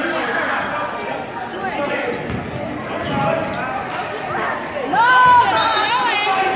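A basketball bouncing on a hardwood gym floor during a game, under voices in a large echoing gym. A loud, high squeal rises and falls about five seconds in.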